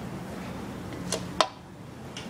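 A low steady hum with two sharp clicks a little over a second in; the second click is the louder, and the hum drops away after it.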